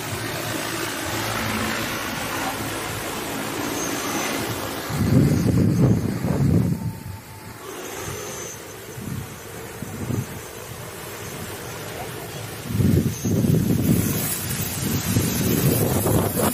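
A multirotor agricultural seeding drone's rotors buzzing as it flies over the rice field. Gusts of wind buffet the microphone, with low rumbling surges about five seconds in and again near the end as the drone comes close.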